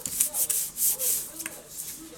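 Paper flyer being folded and creased by hand: several quick rubbing swishes as the hand slides along the sheet, thinning out in the second half.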